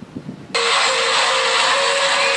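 Faint tail of intro music, then about half a second in a loud, steady rushing hiss with a faint hum cuts in abruptly: the background noise of a low-quality room recording.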